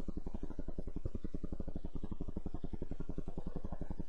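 A steady low buzzing hum that pulses quickly and evenly, about a dozen pulses a second: constant background noise in the recording.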